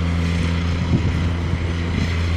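Wind buffeting the microphone, with a steady low mechanical hum running under it.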